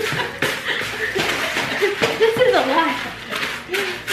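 Laughing and half-spoken voice over the scraping and crunching of a wooden spoon stirring cornflakes coated in melted marshmallow in a plastic mixing bowl.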